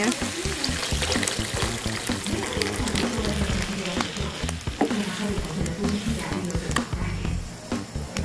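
Cooked red beans and their broth poured into a hot frying pan of sautéing tomato, chile and onion, the pan sizzling steadily as the liquid goes in, with a wooden spatula starting to stir near the end.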